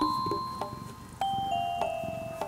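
Background music: a slow, gentle tune of soft chiming mallet notes, each struck note ringing on.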